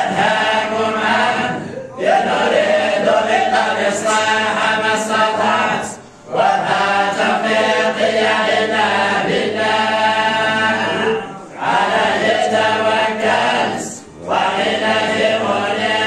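A group of men chanting a religious recitation together in unison, holding long drawn-out phrases with brief breath pauses between them.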